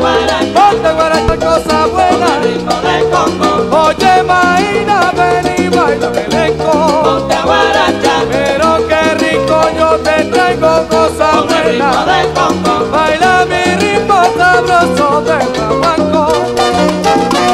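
Salsa orchestra recording playing from a 45 rpm single, with a steady beat and melody lines running throughout.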